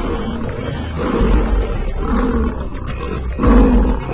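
Lions roaring in a fight, about four loud roars roughly a second apart, over background music.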